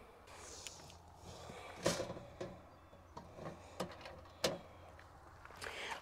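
Faint shuffling footsteps on gravel and a few light knocks, the clearest about two seconds in and again about four and a half seconds in, as a person steps along and crouches down.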